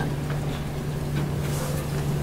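Steady low hum with low background room rumble, no words.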